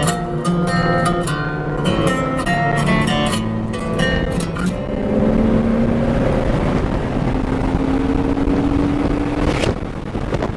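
Plucked-guitar music stops about five seconds in and gives way to a car's engine heard from inside the cabin at track speed, with rushing wind and road noise. The engine note climbs steadily as it revs, then breaks off near the end.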